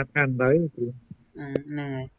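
A man speaking over an online video call, with a steady high-pitched chirring behind his voice that stops abruptly with a click about one and a half seconds in.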